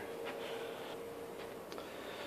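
Faint steady hum, one thin tone, under light rustling.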